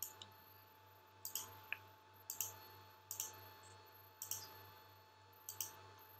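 Quiet computer mouse clicks, about six of them, each a quick press-and-release pair, spaced roughly a second apart, over a faint steady electrical hum.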